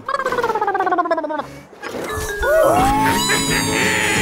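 A cartoon character's pulsing giggle, falling in pitch over about a second and a half, then light background music from about halfway through.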